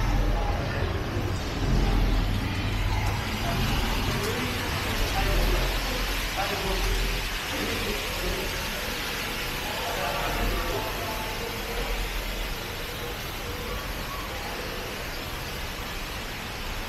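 Walking-through ambience of a busy station concourse: scattered voices of passers-by over a steady hiss and a low rumble. The rumble eases off about three-quarters of the way through.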